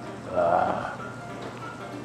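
Light background music with steady, jingle-like notes. About half a second in, a short wavering vocal sound rises over it for about half a second.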